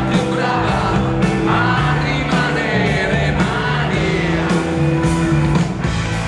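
Live rock band playing a song, with electric guitars, bass and drums under singing, heard from out in the audience.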